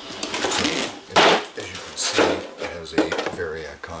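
Clear plastic RC car body and its plastic packaging rustling and crinkling as it is handled and set down on concrete, loudest about a second in, with a voice also heard.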